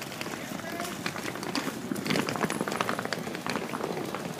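Indistinct chatter of a crowd of people, with scattered light clicks and knocks.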